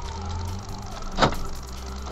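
Low steady hum inside a stopped car, with one sharp knock a little past the middle.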